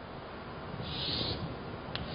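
A brief scratchy stroke of a pen or marker drawing a line, about half a second long and about a second in, over faint room noise, with a short click at the end.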